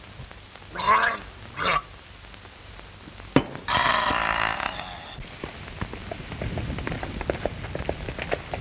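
A man's comic vocal reaction to gulping strong liquor: two short grunts, a sharp knock about three seconds in as the glass is set down, then a loud rasping gasp. After that comes a run of crackly, sputtering noises.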